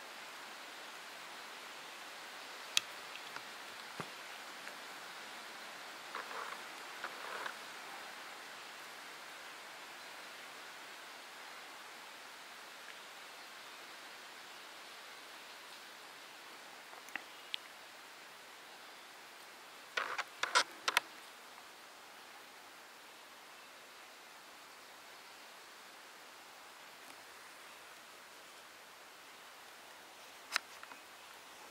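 Faint, steady woodland background hiss, broken by a few scattered sharp clicks. The loudest is a quick cluster of four or five clicks about two-thirds of the way through.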